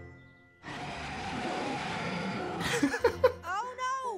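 Cartoon soundtrack over background music: a rushing noise effect of about two seconds, ending in a sharper burst, then a character's short rising vocal exclamation near the end.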